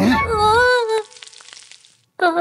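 A cartoon character's drawn-out, wavering cry for about a second. It is followed by a crackling hiss sound effect that fades away.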